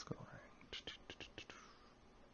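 Faint whispered muttering: a few soft, hissy syllables in quick succession about a second in, then quiet.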